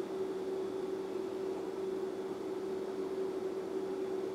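A steady hum over an even hiss.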